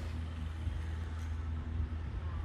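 A motor vehicle engine idling with a steady low hum.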